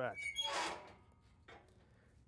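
Body-Solid 45-degree leg press sled sliding briefly on its rails with a thin squeak as the weight comes down, then a light click about one and a half seconds in.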